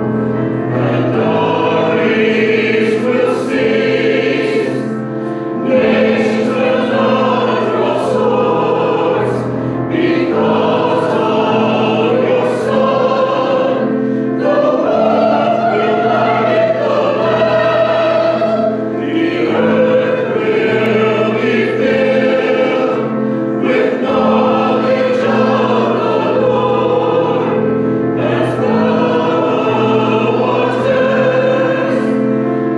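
Church choir of men and women singing an anthem with piano accompaniment.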